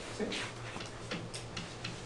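A pen stylus tapping and scraping on a tablet's writing surface as letters are written: faint, irregular ticks, several a second.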